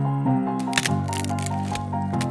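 Solo piano score: a quick repeated high two-note figure over low held bass notes. A few short, sharp clicks sound over it, most of them just before the middle.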